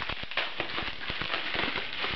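Bubble wrap crinkling and crackling as it is pulled off a small item by hand: a dense, irregular run of small clicks.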